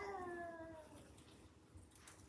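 A single short, high-pitched vocal cry that falls slightly in pitch and fades out within about a second.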